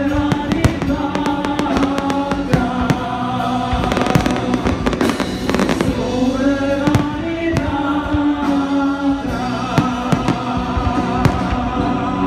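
Fireworks going off in many rapid bangs and crackles throughout, over loud music with long held notes.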